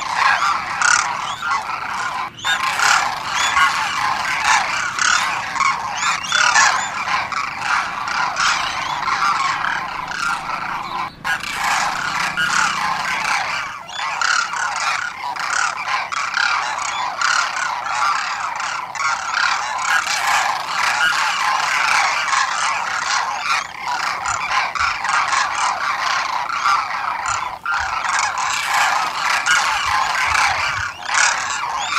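A flock of demoiselle cranes calling, many calls overlapping in a dense, continuous chorus with a few very brief breaks.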